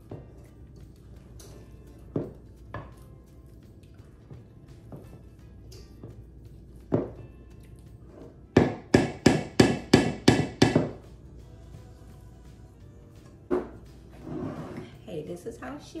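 Spatula knocking against a stainless steel mixing bowl while blueberry jam is worked into cookie dough: a few single knocks, then a quick run of about eight knocks around the middle, over soft background music.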